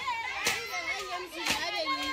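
A group of women's voices singing and calling out together in a traditional Zulu song, with a sharp beat about once a second.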